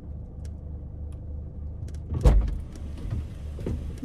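Steady low rumble inside a car, with one heavy thump a little past two seconds in and a few faint ticks.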